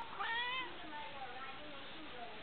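Domestic cat giving one short meow, its pitch rising sharply at the start, near the beginning.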